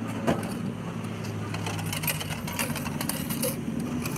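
Japanese drink vending machine paying out change from a 500-yen coin: small coins clinking down into the return slot, with a single click just after the start, over a steady low hum.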